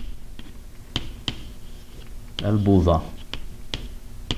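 Chalk tapping and clicking against a chalkboard as Arabic script is written: irregular sharp clicks, about two a second, with a soft scratch between them.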